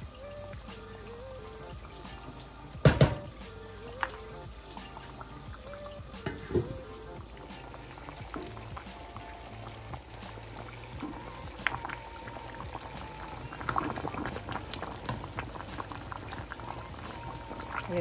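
Thick gravy simmering and bubbling in a skillet, with a metal spoon stirring through it. There are a few sharp knocks, the loudest about three seconds in.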